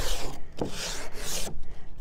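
Sandpaper rubbed by hand along the rough edge of a fiber cement fascia board, taking the roughness off: two hissing strokes, the second longer, ending about three quarters of the way through.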